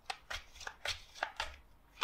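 A tarot deck being overhand-shuffled by hand: a quiet string of short, irregular snaps as packets of cards drop onto each other, about six or seven in two seconds.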